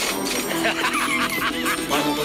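A quick run of about five honking calls, each rising and falling in pitch, over background music.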